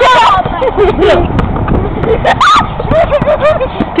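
Several people shouting and laughing excitedly without clear words, with a louder, higher shriek about two and a half seconds in.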